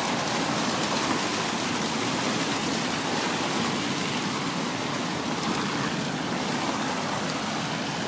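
Steady, even hiss of wet night-street noise picked up by a phone microphone, with no break or sudden sound.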